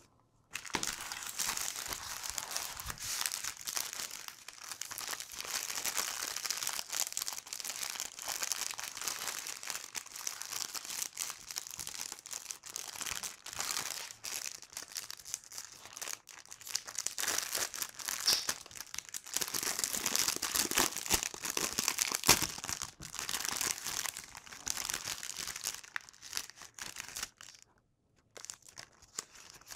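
Clear plastic packaging crinkling and crackling continuously as it is handled and unwrapped by hand, with many small sharp crackles, dying away just before the end.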